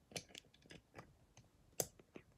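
LEGO plastic bricks being handled on the model, giving a few faint clicks and taps, with one sharper click near the end.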